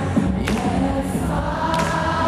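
Rock band playing live, heard from the audience: a sung lead vocal with layered backing vocals over a steady bass line, and two sharp drum hits about a second and a half apart.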